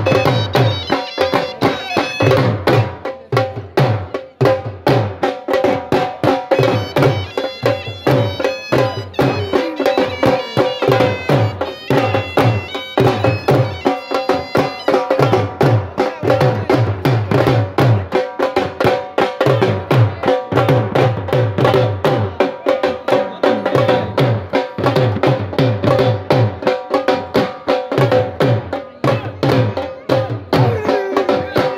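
Several dhol drums beaten with sticks in a steady, driving dhamal rhythm, deep bass strokes under quicker treble strokes. A high melody instrument plays over the drumming in stretches, above a steady held tone.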